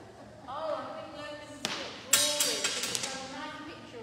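High-pitched voices, a child's among them, talking briefly, with one sharp click and then a quick cluster of sharp clicks and knocks in the middle, echoing slightly.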